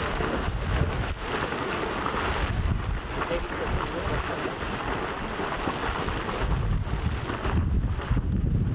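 Wind buffeting the microphone, a gusty low rumble over a steady rushing hiss, swelling near the end.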